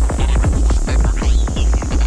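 Fast electronic tekno-style dance music with a heavy, sustained bass and a rapid, driving kick drum and percussion, plus short gliding synth lines.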